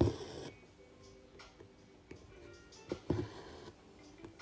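Embroidery thread being drawn through fabric stretched in a hoop: a short swish at the start, the loudest sound, and another about three seconds in. Soft background music plays under it.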